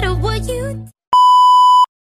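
A song with singing runs on and cuts off just under a second in. After a brief silence, a steady electronic beep like a TV test tone sounds for under a second and stops abruptly.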